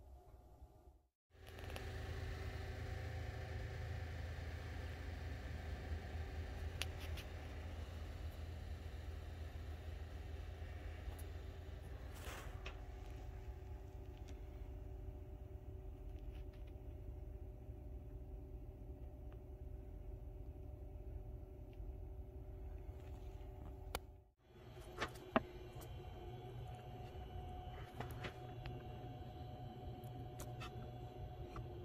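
A steady low machine hum with a few faint steady tones in it. It cuts off abruptly about a second in and again near the end, and a couple of sharp clicks come just after the second cut.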